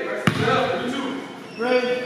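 A basketball bouncing once on a hardwood gym floor about a quarter second in, a single sharp smack that rings in the hall. Voices call out around it, louder near the end.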